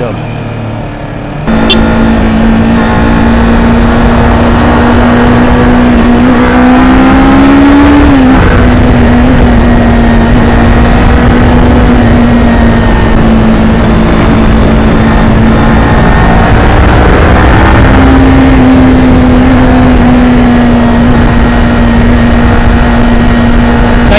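Kawasaki Ninja 400 parallel-twin engine running hard at road speed, heard from the rider's seat with wind rushing over the microphone. It gets suddenly louder about a second and a half in; its note climbs around six to eight seconds in and drops back, then steps up again near eighteen seconds and slowly eases.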